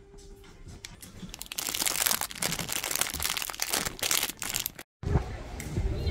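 Crinkling and crackling of plastic handled right at the microphone for about three seconds, starting a second and a half in. It stops dead at an edit near the end and gives way to a low outdoor rumble.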